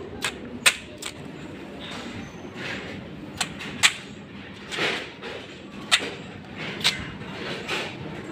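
Plastic pins of a large pin-art board clicking as a hand presses into them and brushes across them, in a handful of irregular sharp clicks.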